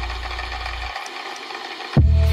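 Electronic synth-pop/chillwave music. A low bass note fades and cuts off about a second in, leaving a thin layer of higher synth texture, and a new bass note hits right at the end.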